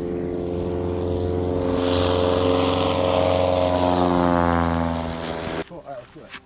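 Piper Cub light plane's engine and propeller at takeoff power as it passes close by: a steady drone that swells to its loudest mid-way, drops in pitch as it goes past, then cuts off suddenly near the end.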